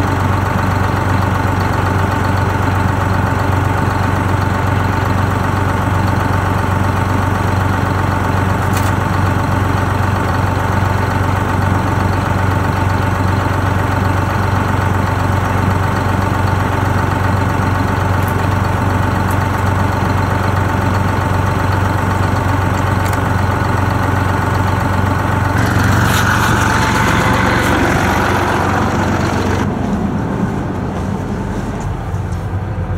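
1963 Flxible Fishbowl bus's engine idling steadily. A louder rushing noise joins in near the end.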